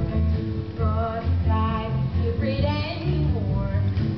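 Young voices singing a slow 1950s doo-wop ballad over instrumental accompaniment with a steady bass line.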